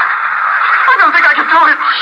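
Speech from an old radio drama recording: a steady hiss, then a woman's voice starting about a second in.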